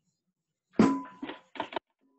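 A metal bowl clanking against a stainless steel sink: one loud ringing clank, then three lighter knocks close together.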